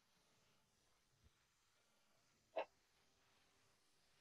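Near silence, broken by one short faint sound about two and a half seconds in.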